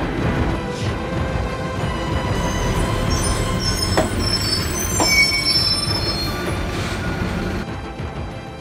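City bus interior noise: a steady low rumble with high-pitched squeals through the middle and two sharp clicks, under background music.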